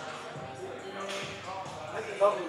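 A man groaning quietly with strain through a rep on a plate-loaded shoulder press machine, his left shoulder in pain.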